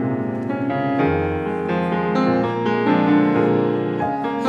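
Piano playing a classical piece, a steady flow of notes with a low bass note coming in about a second in.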